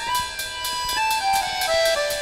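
Instrumental background music: a melody of held notes stepping down in pitch, over a light ticking beat of about four ticks a second.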